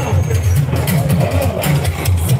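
Loud party music played over a sound system, with a heavy, repeating bass line and sharp percussion hits, and crowd voices mixed in.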